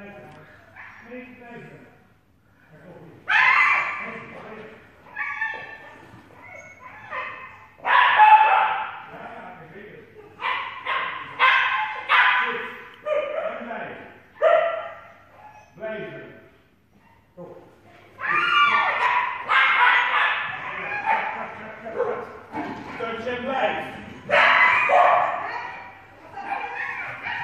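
A dog barking and yipping repeatedly in sharp, irregular bursts, each bark echoing in a large hall.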